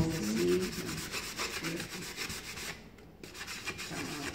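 Fine sanding sponge rubbed in quick back-and-forth strokes over the edges of a chalk-painted cigar box, wearing the paint through at the corners to distress it. The strokes pause briefly about three seconds in, then resume more lightly.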